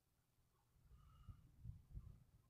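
Near silence, with a few faint low thumps in the second half.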